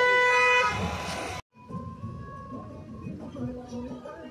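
A vehicle horn sounds in city traffic as one held tone, stopping under a second in. After a brief total dropout, quieter traffic and road noise follows, heard from inside a car.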